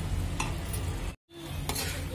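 Tomatoes and green chillies frying in oil in a pan, with a metal spatula stirring and scraping through them, a few light clicks of the spatula against the pan, over a low steady hum. The sound cuts out completely for a moment a little past the middle.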